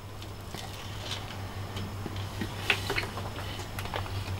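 A man chewing a mouthful of hot dog in a bun: a few faint, soft clicks, heard over a low steady hum.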